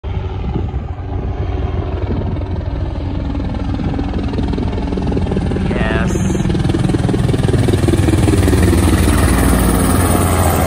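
Helicopter flying low and approaching overhead, its rotor chop growing steadily louder, with the pitch falling slightly near the end as it comes over.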